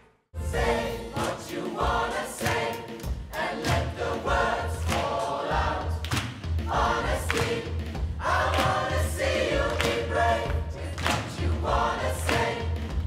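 Large gospel choir singing with a live band of keyboard, bass and drums, over a steady beat. The music cuts in abruptly after a split second of silence at the very start.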